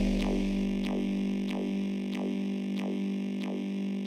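Progressive psytrance breakdown with no drums: a steady synth drone under short falling-pitch electronic blips repeating nearly three times a second.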